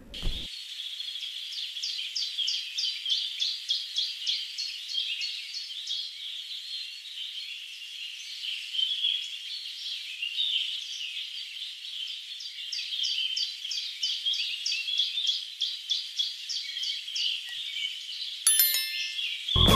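Birds chirping over a steady high chorus of insects. Short chirps repeat several times a second in two runs, one starting about a second and a half in and one in the last third.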